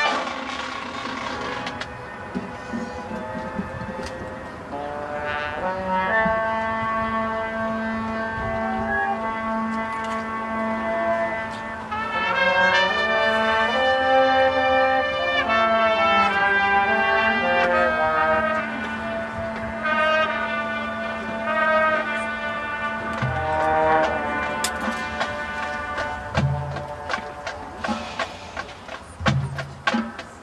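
Marching band brass playing a slow passage of long held chords over a sustained low note, swelling louder about halfway through. Near the end the low note drops away and drum hits come in.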